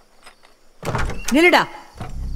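A wooden door being opened: a heavy thunk of the latch and handle about a second in, followed by a short creak that rises and then falls in pitch.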